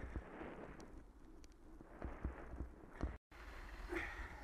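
A bicycle riding over a rough gravel path: tyre crunch and rumble with irregular knocks and rattles from the bike as it hits bumps. The sound drops out for a moment near the end.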